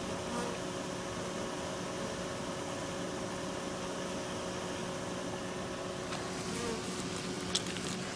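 Steady buzzing hum of a honey bee swarm clustered at the entrance of a bait hive as the bees move in. A brief click comes near the end.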